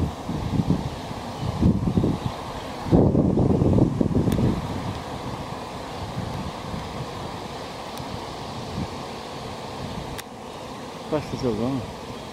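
A honeybee swarm in flight: the steady hum of thousands of bees, with gusts of wind hitting the microphone a few times. A man's voice comes in briefly near the end.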